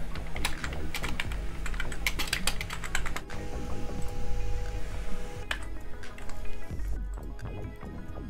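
Typing on a computer keyboard: a quick run of keystrokes over the first three seconds or so, then a single further click about five and a half seconds in.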